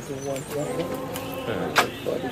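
Indistinct voices of several people talking, with one sharp knock near the end.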